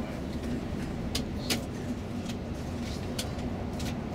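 Steady drone of a coach's engine and tyres at motorway speed, heard from inside the cabin, with a low steady hum and a few short sharp clicks and rattles.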